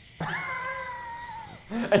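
A single drawn-out, high, voice-like wail lasting about a second and a half, dropping slightly in pitch as it ends.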